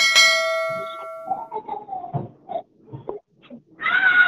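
Notification-bell 'ding' sound effect from a subscribe-button animation: a click, then a single bright bell tone that rings out over about a second and a half. Faint, indistinct speech follows.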